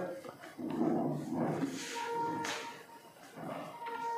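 Whiteboard duster rubbing across a whiteboard in a few wiping strokes.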